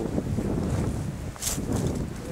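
Wind buffeting the microphone outdoors, a rough uneven rumble, with one short hiss about one and a half seconds in.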